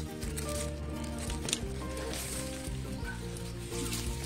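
Background instrumental music with steady held notes. A few sharp clicks come from pruning shears snipping lemongrass stalks, one at the very start and another about a second and a half in.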